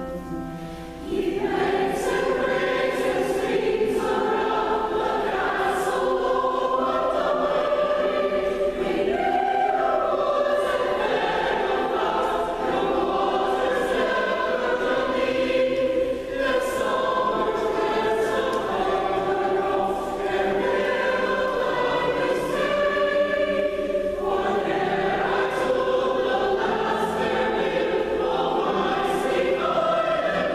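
Mixed SATB community choir singing a choral piece with piano accompaniment; the voices come in about a second in, after a short piano passage.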